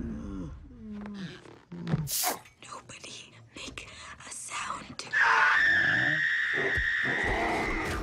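Film soundtrack: hushed, whispered dialogue and scattered effects with a sharp hit about two seconds in. Then a loud, steady, high-pitched sound starts suddenly about five seconds in and holds for about three seconds.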